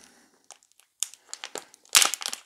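Small plastic packaging bag crinkling as fingers handle and open it: quiet at first, then irregular crackles from about a second in, loudest near the end.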